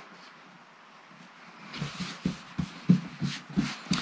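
Hands smoothing and patting two cotton quilting squares flat on a cutting mat: soft fabric rustling with a few light taps, starting about two seconds in.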